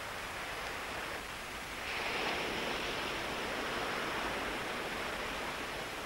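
Steady hiss of noise with no distinct events, growing a little louder about two seconds in and holding.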